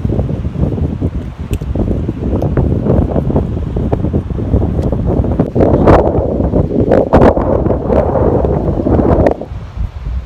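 Wind buffeting the microphone in uneven gusts, heaviest from about halfway through, then easing off sharply just before the end.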